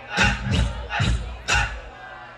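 Dancehall music through a stage sound system, heavy bass-drum hits about twice a second, with a crowd shouting over it; the level drops away near the end.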